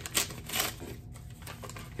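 Paper rustling as a mailed envelope is handled and opened, with a couple of short crisp crackles in the first half-second, then fainter rustling.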